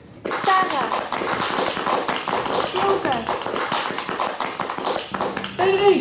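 Indistinct voices over fast, irregular tapping and clicking that starts abruptly just after the beginning, with a louder voice near the end.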